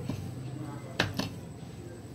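Hands mashing boiled potato and sago pearls in a steel plate, with two sharp knocks against the plate about a second in.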